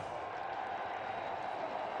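Steady, even crowd noise from a packed football stadium, heard through a TV broadcast.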